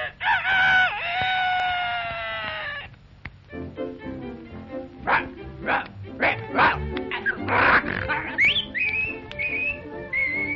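A cartoon lion crowing like a rooster: one long crow of about three seconds. Music then follows, with a string of short, noisy cartoon sound effects in its second half.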